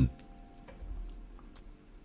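Faint background music bed with soft ticks about once a second.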